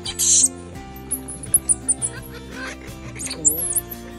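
Common squirrel monkeys giving very high-pitched, short squeaky chirps over steady background music: a string of quick chirps about a second in and a few more near the end, after a brief loud hiss-like burst at the very start.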